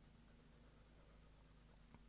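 Near silence: the faint scratch of a wax crayon coloring back and forth on drawing paper, over a low steady hum.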